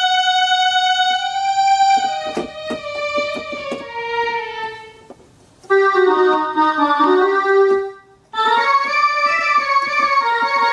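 Yamaha PSR-172 portable keyboard playing its preset voices: a long held note for about two seconds, then a run of shorter changing notes. It falls quiet briefly twice, around the middle and near the end, and each time resumes with chords.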